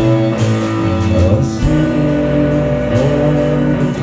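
Live rock band playing: electric guitars and bass over drums, with a steady pulse of cymbal strokes, recorded from the audience in a club.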